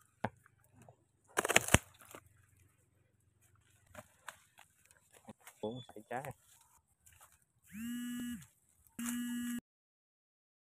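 A loud crackling rustle about one and a half seconds in, a short pitched call around six seconds, and then two short, steady honks near the end that start and stop abruptly.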